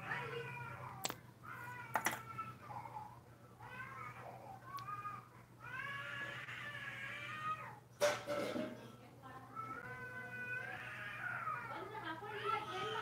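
Repeated drawn-out, wavering meow-like calls, each about a second long, over a low steady hum, with a few sharp clicks, the loudest about eight seconds in.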